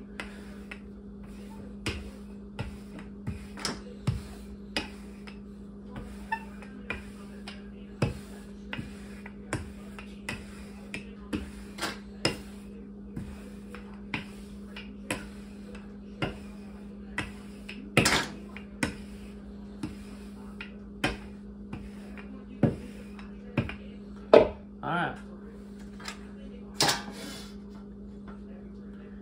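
A wooden rolling pin rolling pie dough out thin on a floured wooden countertop: irregular clacks and knocks about once a second as the pin is worked back and forth, with a few louder knocks in the second half.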